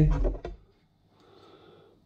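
A man's voice finishes a word in the first half second, then near silence with a faint, brief soft noise just after the middle.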